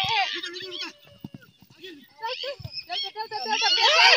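Several people shouting and calling out at high pitch, without clear words. It eases off about a second in and rises again into a louder burst of yelling near the end.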